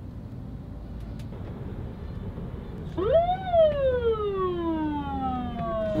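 A siren winds up sharply about halfway through and then slowly winds down in pitch, over a low rumble of street traffic.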